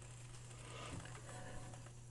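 Faint, steady low hum with light hiss from a running RCA 810K tube radio.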